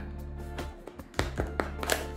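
Background music, with a few sharp clicks and taps from a wrist power ball's product box being opened by hand; the loudest comes a little over a second in.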